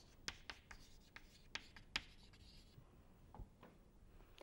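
Chalk writing on a chalkboard: a faint, irregular run of short taps and scratches as symbols are chalked onto the board.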